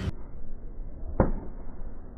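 Slowed-down, muffled driving-range sound with a single deep thud about a second in, dropping away afterwards: a golf club striking a ball, pitched down by the slow motion.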